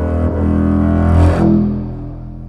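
Closing chord of an acoustic song on upright double bass and ukulele. The bass holds long low notes, the chord swells about a second in, then the sound fades away over the last half second.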